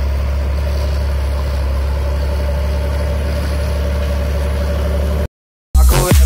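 A large John Deere tractor's diesel engine runs steadily with a low drone as it pulls a strip-till seed drill. Near the end the sound cuts out to a brief silence, then electronic dance music with a heavy beat begins.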